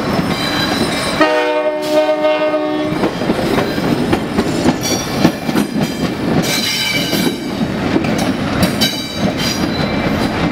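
Diesel locomotive air horn on a Long Island Rail Road sandite train, one blast of under two seconds starting about a second in. The train then rolls past with wheel clatter and brief high-pitched wheel squeals.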